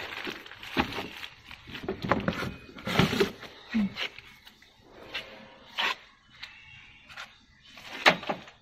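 Plastic wrapping crinkling and rustling in irregular bursts, with light knocks, as parts are handled and pulled out of a cardboard box.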